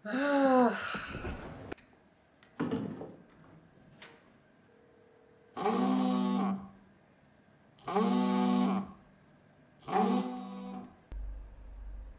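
A mobile phone vibrating on a floor: three buzzes, each about a second long and some two seconds apart. A short sigh comes in the first seconds.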